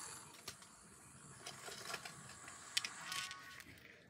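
Faint clicks and light rattles of small plastic keychain holders and their metal hardware being handled and set down, with a brief faint tone near the end.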